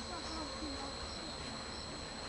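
Insects singing outdoors: a steady, unbroken high-pitched trill, with short higher chirps recurring about twice a second.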